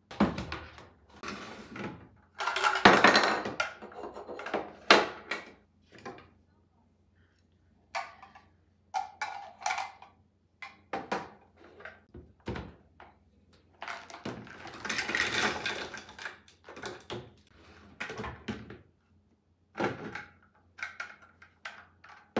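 Plastic blender jar and food processor parts knocking and clattering as they are handled and set down on a counter, with longer stretches of rattling as whole Oreo cookies shift and are tipped from the blender jar into the food processor bowl. No motor runs.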